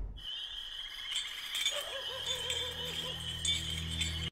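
Night-time outdoor ambience: a steady high insect-like chirring, joined about two seconds in by a warbling call repeating about five times a second over a low hum, just after loud film music has died away.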